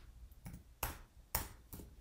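A few sharp clicks of computer keyboard keys being pressed one at a time, a value being typed in, about four keystrokes spaced a third to half a second apart.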